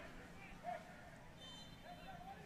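Very quiet, faint ambience of an outdoor soccer match, with a couple of brief faint sounds.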